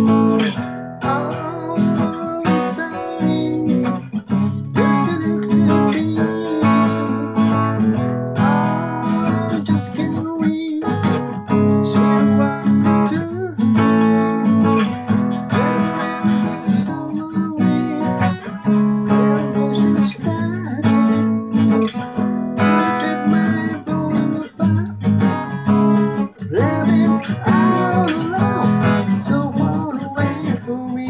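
Morris steel-string acoustic guitar played throughout with strummed chords in a steady rhythm.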